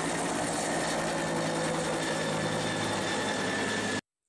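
A two-bladed helicopter flying overhead: a steady, fast rotor beat over an even engine hum, cutting off suddenly at the end.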